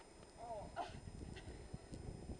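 Bare feet crunching and shuffling through deep snow, with a brief call from a voice, bending up and down in pitch, about half a second in.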